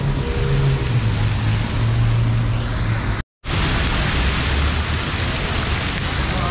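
Steady rushing hiss of a large fountain's water jets over city-street noise, with a low steady hum in the first half. The sound cuts out for a moment about three seconds in, then the water hiss comes back brighter and closer.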